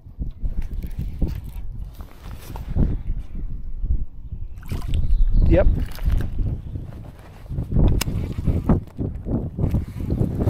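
Water slapping against a bass boat's hull with wind buffeting the microphone, a small splash about six seconds in as a small bass is released over the side, and a sharp click near eight seconds.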